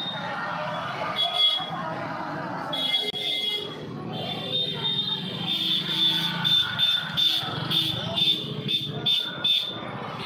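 Busy street sound of crowd voices and a passing motorcycle. A high-pitched electronic beeping comes and goes, pulsing about twice a second in the second half.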